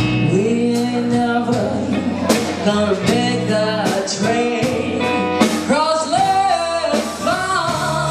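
Woman singing a slow song live with a band, holding long notes over electric guitar and a steady bass line.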